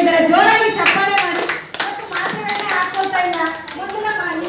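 A small group applauding, irregular hand claps for about two and a half seconds, starting about a second in. A woman's voice through a microphone comes before the clapping and carries on under it.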